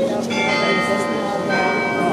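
Carillon bells playing: several bells are struck together about a third of a second in, more about a second and a half in, and each tone rings on over the others.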